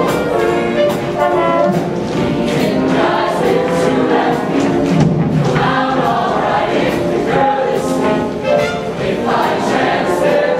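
Show choir singing together in harmony, backed by a live band, with regular percussion hits throughout.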